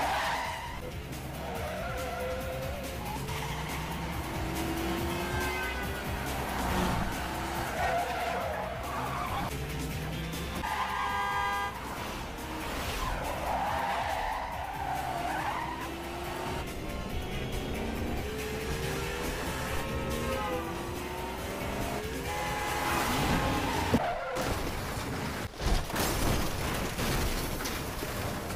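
Car-chase sound effects: engines and repeated tyre squeals as cars swerve through traffic, over tense background music, with a couple of sharp impact knocks near the end.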